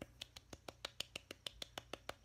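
A quick, even series of faint light clicks or taps, about six a second.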